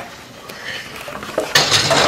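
Metal clatter of a stainless skillet being handled and slid into a broiler, with a sharp click and then a loud clanking scrape about one and a half seconds in.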